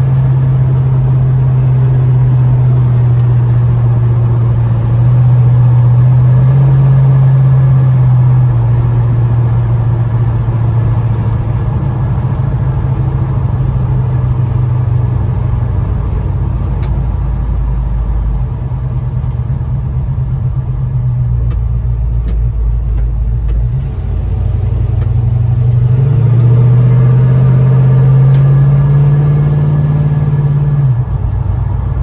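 1970 Chevrolet C-10 pickup's engine and exhaust rumbling, heard inside the cabin while driving. It runs steadily at cruise, eases off and quietens around the middle, then rises again as the truck accelerates near the end.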